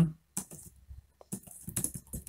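Typing on a computer keyboard: a run of irregular key clicks with short pauses between them.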